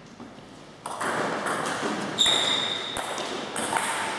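Table tennis doubles play on a wooden floor as a rally ends: quiet at first, then a sudden burst of noise about a second in. About two seconds in comes a high ringing ping lasting under a second, with a few light thuds and another short high sound near the end.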